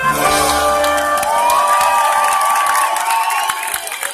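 A live band's final held chord, with brass, ringing out; the bass drops away about a second in. A crowd cheers, whoops and claps over it as the song ends.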